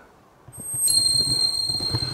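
A brief quiet moment, then steady outdoor background noise: a low rumble with a thin, steady high-pitched whine that starts about a second in.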